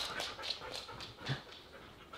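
A Siberian husky sniffing in quick, faint breaths through its nose while it searches for a hidden scent packet. The sniffs are busiest in the first second and then thin out.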